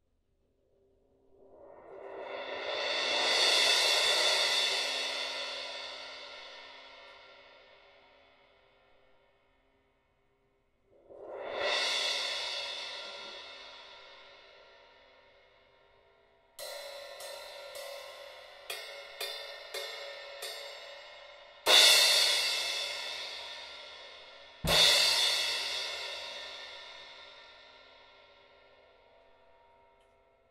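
Custom Saluda Glory 15-inch crash cymbal, made lighter to respond quickly, played as a sound test. It starts with a slow mallet swell that rises and rings away, then a shorter mallet swell. Next come a run of quick stick strikes, then two full crashes that each ring out, the last with a low thump underneath.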